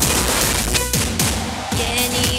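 Music from a song's backing track with a steady drum beat, about two beats a second.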